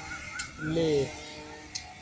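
A bird calls four short, quick, rise-and-fall notes in the first half second, overlapped by a man's single spoken word about a second in.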